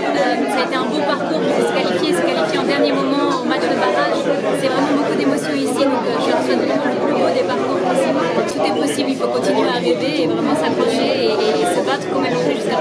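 Speech: a woman talking over the background chatter of many voices.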